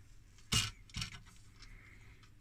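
Quiet room background with two brief, soft noises, about half a second and one second in.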